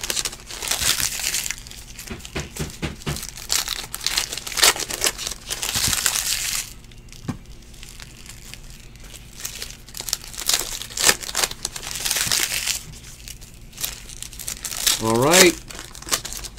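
Foil trading-card pack wrappers crinkling and tearing as packs are ripped open by hand, in two long stretches of rustling with a quieter lull about seven seconds in.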